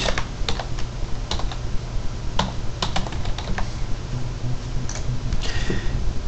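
Typing on a computer keyboard: irregular single keystrokes and a few quick runs of keys, over a steady low hum.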